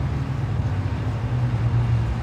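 Steady low rumble of outdoor background noise, with no speech over it.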